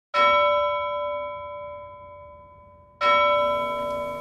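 A bell struck twice, about three seconds apart, each stroke ringing out with several clear tones and slowly fading.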